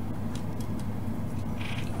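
Steady low electrical hum, typical of a small 240 V mains transformer running under power, with a few faint clicks.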